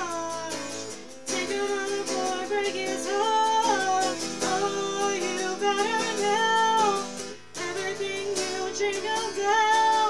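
A young woman singing while strumming a solid-body electric guitar through a small amp, with short breaks between sung phrases. The amp gives the guitar a raspiness that she calls so bad it is starting to act up.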